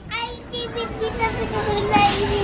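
A toddler's voice: a short babbled word near the start, then a long, steady held sound at one pitch.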